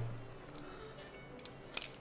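A pen being handled: a couple of short, sharp clicks about one and a half seconds in, over quiet room tone.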